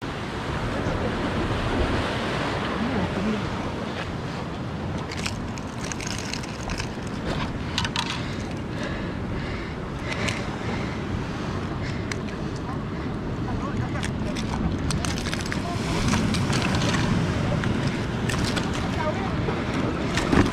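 Sea surf breaking on rocks and wind buffeting the microphone in a steady rush, with scattered clicks and knocks from about five seconds in.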